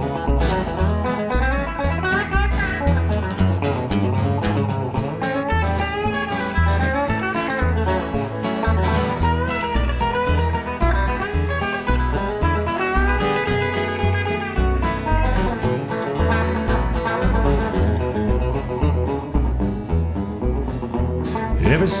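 Band playing an instrumental break: a guitar lead line with bending notes over a steady bass line and drums with cymbals.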